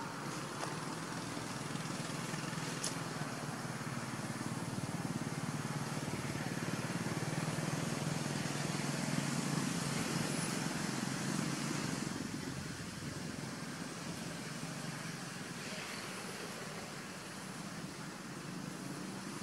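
Steady low motor-vehicle hum that builds toward the middle and eases off about two-thirds of the way through.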